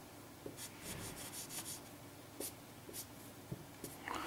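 Felt-tip marker strokes rubbing across paper as a drawing is shaded in: a series of short, faint scratchy swipes.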